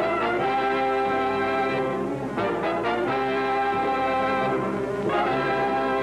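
Orchestral end-title music led by brass, holding long chords that shift to new chords a few times.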